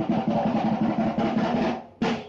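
A drum played in a fast, even roll-like beat, stopping shortly before the end.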